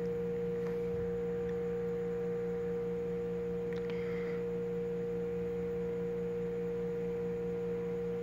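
A steady, unchanging hum with a clear pitch, the constant background noise of the recording.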